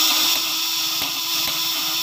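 Homemade 24–36 V fish-stunner inverter buzzing steadily: its contact-breaker points chatter as they switch battery current into the step-up transformer, which is running under a lamp load. The buzz holds an even tone and stays smooth and steady, the points running evenly.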